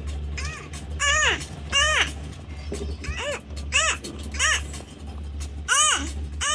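A high, young voice chanting the short 'u' sound over and over in time, a string of evenly spaced 'uh' syllables that each rise and fall in pitch, about one every two-thirds of a second, from a phonics chant ('u, u, u, up, up').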